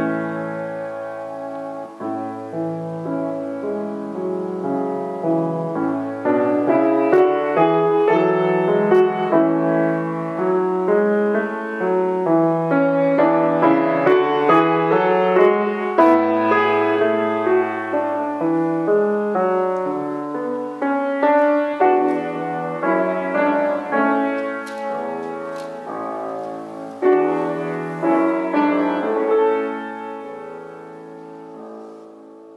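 Piano music: a continuous flow of struck notes over a low bass line.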